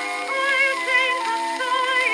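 Early acoustic-era recording of a woman singing with vibrato over sustained instrumental accompaniment, thin-sounding with no bass.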